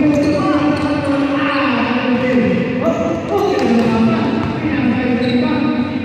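A basketball bounced on an indoor court floor as it is dribbled up the court. Several voices shout and talk over it throughout.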